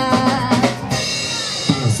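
Live jazz band playing between vocal lines: drum kit strokes under saxophone and brass, which hold a steady chord in the second half.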